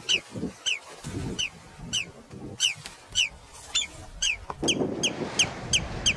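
A bird calling over and over, short high calls that slide downward, about three a second. Wind buffets the microphone underneath.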